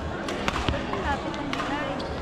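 Badminton play on an indoor court: a few sharp clicks of rackets striking shuttlecocks and short squeaks of shoes on the court floor, over background chatter.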